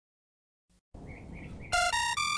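A second of silence, then a quiet low hiss, and near the end a digital alarm clock goes off with a loud run of bright electronic tones stepping up and down in pitch.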